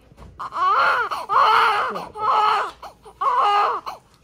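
Newborn baby crying minutes after birth, in four short wavering wails separated by brief pauses.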